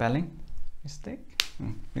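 A man speaking in short phrases in a small room, with one sharp click about one and a half seconds in.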